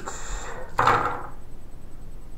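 Plastic attack dice being rolled onto a tabletop gaming mat, a short clatter and tumble just under a second in.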